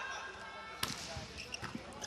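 A volleyball struck hard by hand once, about a second in, on a jump serve, followed by a few fainter knocks.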